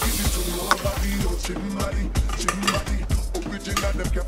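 Water being poured over rice into a mini rice cooker's inner pot, a splashy pour that tails off about a second and a half in, over background music with a beat.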